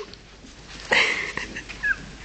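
A Yorkshire terrier and a cat tussling and calling at each other: a short harsh burst of sound about a second in and a brief high falling whine near the end.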